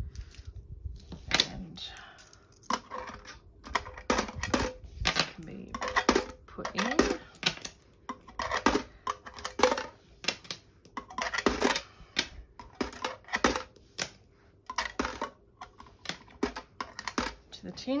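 Australian coins being picked up and handled on a desk mat, with irregular metallic clinks and taps through the whole stretch, some ringing briefly.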